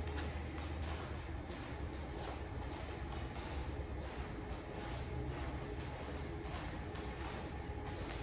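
Footsteps of a man and a poodle's claws tapping on a hard floor as they walk on a leash: irregular light taps over a steady low hum.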